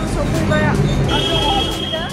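People's voices over a steady low vehicle rumble.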